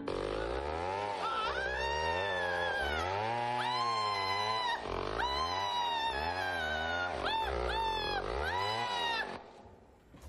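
A man's voice crying out in a series of long, loud, wailing cries, each rising and falling in pitch, with two short ones near the end. The cries stop abruptly a little after nine seconds in.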